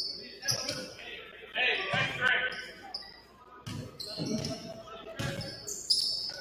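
A basketball being dribbled on a hardwood gym floor, echoing in the hall, with short high sneaker squeaks and players' indistinct shouts in between.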